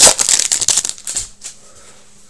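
Foil wrapper of an Upper Deck 2018-19 Series 2 hockey card pack crinkling as it is torn open and pulled off the cards. It is loudest at the start and dies away about a second in.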